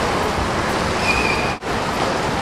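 Steady rushing water noise of a swimming pool, with a swimmer splashing through freestyle strokes. It drops out briefly about one and a half seconds in.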